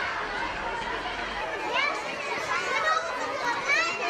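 A crowd of schoolchildren chattering and calling out together, many voices overlapping, with a few high-pitched shouts near the end.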